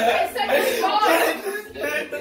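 Girls' excited voices and laughter, with no clear words.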